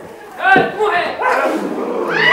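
Several men's voices shouting and calling out at once, not in words, starting about half a second in after a short lull.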